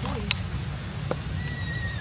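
A brief macaque call near the start, then two sharp clicks and a thin, steady high tone near the end, over a steady low rumble.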